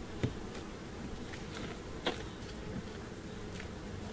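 Honey bees buzzing steadily in a crowd over an open hive, with two short knocks, about a quarter second in and about two seconds in, as the wooden hive rim is handled.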